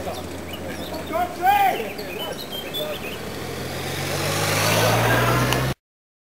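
Motorcycle engine running and growing louder as the bike approaches, with spectators' voices and a loud call about a second and a half in. The sound cuts off abruptly near the end.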